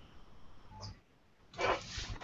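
Faint background hiss of a video-call audio line, cutting to dead silence about halfway through, then a short breathy burst near the end.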